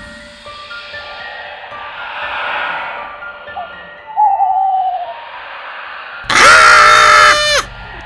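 An owl hoot sound effect, a single falling hoot about four seconds in, over a dark, eerie music bed. About six seconds in, a loud, high-pitched cry is held for a second or so and then drops away.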